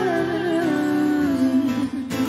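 A woman singing a long, wavering held note into a microphone over a strummed acoustic guitar, live; the note slides down near the end.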